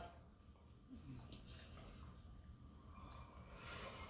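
Near silence: faint room tone with a couple of faint clicks about a second in.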